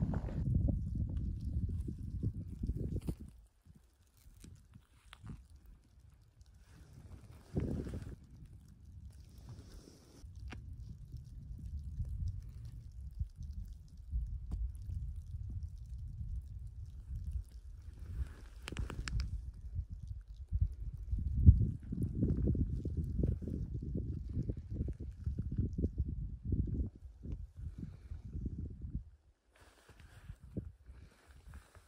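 Wind gusting over the microphone: an uneven low rumble that drops away for a few seconds early on and comes back stronger in the second half.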